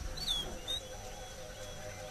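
A bird chirps twice, two short high falling notes within the first second, over a faint steady wavering background.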